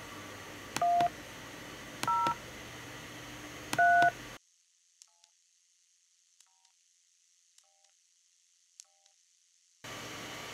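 Touch-tone (DTMF) keypad tones from a Skype dial pad, keying a phone number into an automated phone menu. Three short two-note beeps come about a second or two apart, then the level drops suddenly and four much fainter beeps follow at an even pace.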